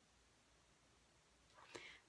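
Near silence: room tone, with a faint breathy sound in the last half second.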